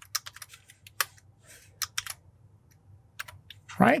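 Typing on a computer keyboard: a scatter of irregular, separate keystrokes.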